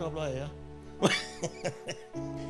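Background music of held, steady chords, with a man coughing a few short times into a microphone in the second half.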